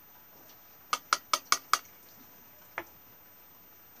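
Five quick metallic taps on a red metal fuel bottle, showing it is metal and not plastic, followed about a second later by one fainter tap.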